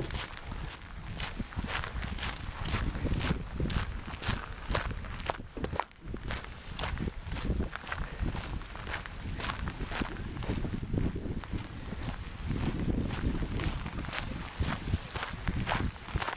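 Footsteps on a sandy path at a steady walking pace, about two steps a second, with a short break about six seconds in. Wind rumbles on the microphone underneath.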